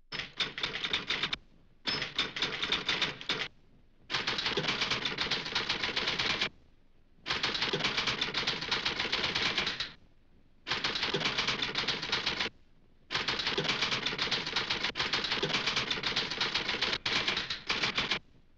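Typewriter typing in fast runs of keystrokes: six runs of about one to five seconds each, split by short pauses, with a few harder strikes near the end.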